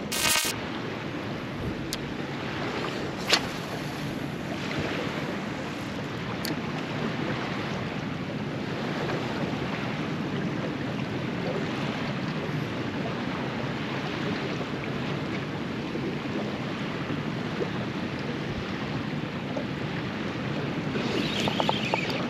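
Steady wind buffeting the microphone over choppy water slapping against a small boat's hull, with a couple of sharp knocks in the first few seconds.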